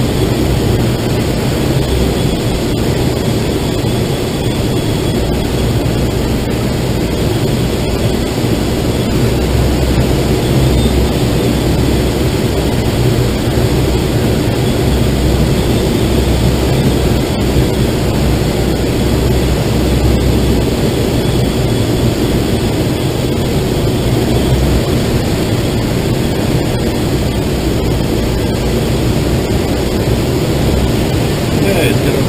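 Steady rush of airflow past a glider's canopy and fuselage, heard inside the cockpit during unpowered flight.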